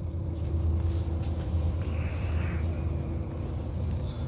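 The coach's 11-litre Volvo diesel engine idling, a steady low rumble with a faint even hum, heard inside the cabin.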